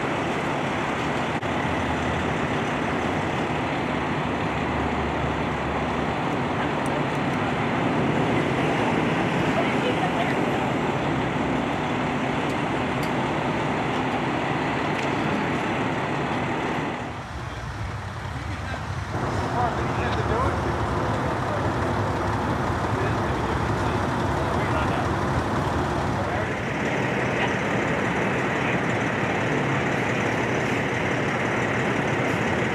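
Steady rush of highway traffic passing close by, with a brief dip in level about seventeen seconds in.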